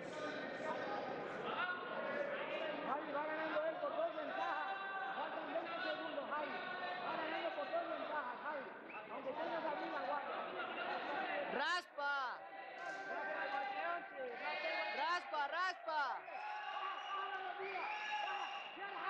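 Several people's voices talking and calling out at once, overlapping, with no single clear speaker, with a few higher-pitched shouts about two-thirds of the way through.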